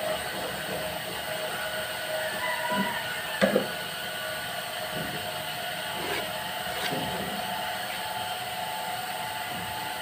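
A few light knocks as a steel ruler and marker are handled on a laminated wooden board, the loudest about three and a half seconds in, over a steady background hum.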